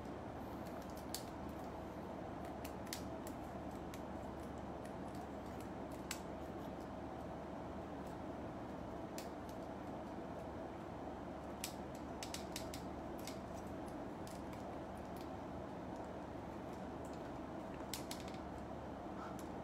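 Faint, irregular small clicks and snaps of parts being fitted onto a Metal Build Freedom Gundam figure, over a steady low background hum.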